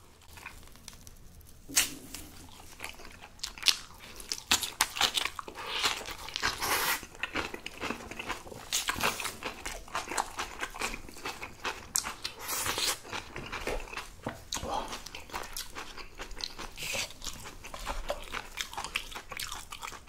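Whole napa cabbage kimchi being torn apart into long strips by gloved hands, heard close as a dense run of short wet, crisp crackles and rips. The kimchi is fresh and very crunchy.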